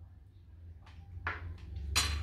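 Someone eating a spoonful of yogurt dessert: a few soft mouth and breath sounds, then a sharp click near the end as a metal spoon is set down.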